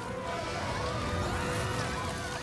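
Dramatic film score with a held note and wavering higher lines, over a low rumbling effect for the magic bramble walls rising up.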